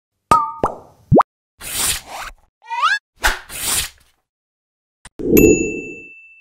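Animated logo intro sound effects: two quick plops and a fast rising zip in the first second, then pairs of swooshes around a short rising chirp, ending with a low thump and a high, ringing ding.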